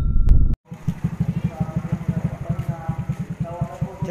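A burst of intro music cuts off about half a second in. It gives way to a Suzuki Raider J motorcycle engine idling with a steady, rapid low putter. This is the engine's untreated sound before an oil additive is put in.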